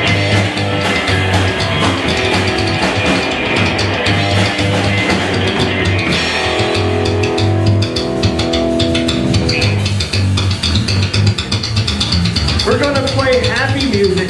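Live rockabilly band playing: electric guitar, upright bass and drum kit, with a steady bass pulse and a chord held for a few seconds in the middle. A man's voice comes in at the microphone near the end.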